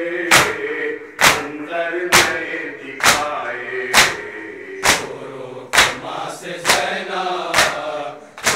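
Shia mourners' matam: a crowd of men slapping their chests with open palms in unison, nine sharp slaps just under a second apart, while they chant a mourning lament together.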